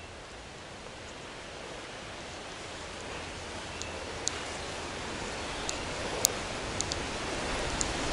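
Outdoor ambient noise: a steady hiss that slowly grows louder, with a few sharp light clicks in the second half.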